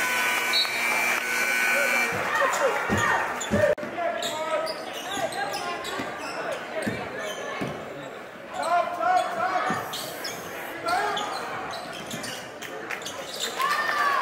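A basketball bouncing on a hardwood gym floor, with sneakers squeaking and spectators' voices echoing in a large gym. A steady tone holds for the first two seconds.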